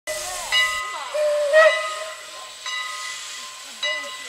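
Steam locomotive hissing as it vents steam, with a whistle-like pitched tone sounding three times over the hiss.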